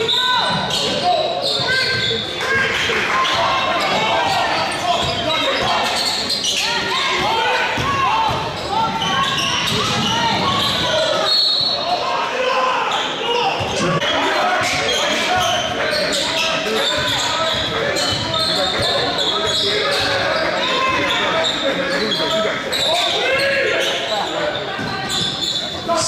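Basketball game in a gym: indistinct voices of players and spectators calling out over one another, with a basketball bouncing on the hardwood floor, all echoing in the large hall.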